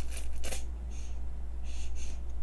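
Squeeze tube of pollock roe (myeongran) being squeezed out through its nozzle: about four short hissing, sputtering spurts of air and paste, over a steady low hum.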